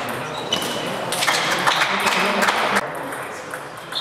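Table tennis ball clicks with short ringing pings in a hall. About a second in comes a burst of clapping lasting about a second and a half, as a point is won.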